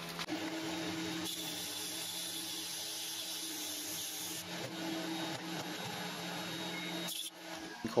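Homemade metal lathe running steadily with a faint motor hum while a boring tool cuts into an aluminium workpiece. The running stops a little after seven seconds in.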